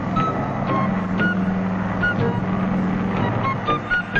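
Steady drone of a propeller aircraft's engines, laid under background music of short, high plucked notes.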